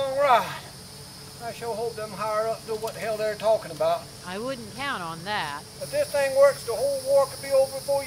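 A man speaking in short phrases, dialogue the recogniser did not write down, over a steady faint high hiss of insects.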